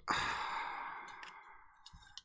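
A person's long sigh: a breath let out that starts at once and fades away over about a second and a half.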